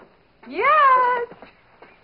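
Speech only: a woman answering with a single drawn-out "Yes?", her pitch rising and then falling.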